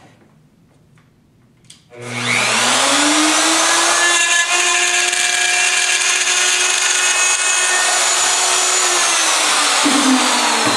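Electric power tool cutting a right-hand cope in wooden base shoe moulding. About two seconds in, after a faint click, the motor starts with a rising whine, then runs at a steady high pitch with a loud cutting noise. Near the end its pitch starts to fall as it winds down.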